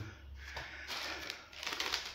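Rustling and crackling of paper being handled, with a few short crackles near the end as a sheet is picked up.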